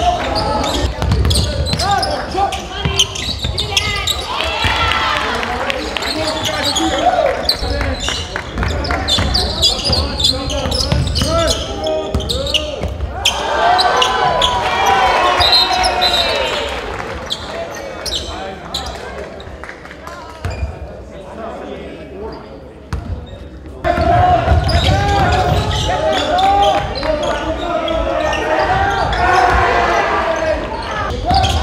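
Live basketball game sound in a school gym: a basketball bouncing on the hardwood, with players and spectators calling out, all echoing in the large hall. The sound drops lower for a few seconds about two-thirds of the way through, then comes back loud all at once.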